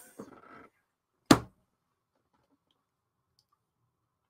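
A single sharp knock about a second in, then near silence.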